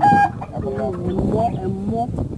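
A chicken gives one short, loud, high-pitched squawk right at the start, over people talking.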